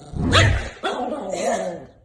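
Small chihuahua barking and yapping in two short outbursts, the first about a quarter second in and a longer one just under a second in, as she snaps at a finger poking her muzzle.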